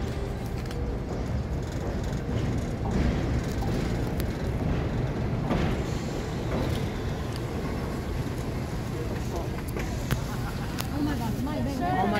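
Vintage red subway train rolling slowly into an elevated station and coming to a stop, a steady low rumble of wheels on rails, with crowd voices over it.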